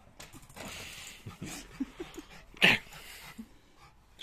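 Small Lhasa Apso–Shih Tzu cross dog vocalising in excited play: a few short, soft noises and then one loud yip about two-thirds of the way in. There is rustling in the first second.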